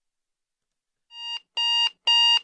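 Digital alarm clock beeping: two short, high-pitched electronic beeps starting about a second in, the first fading up, the second about half a second later.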